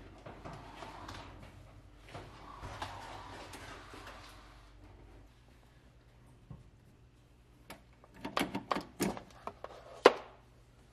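A gas range being slid out from the wall, a faint scraping rumble over the first few seconds. After a pause, a quick run of sharp clicks and knocks near the end as its power cord is unplugged and the gas shut-off valve behind it is handled.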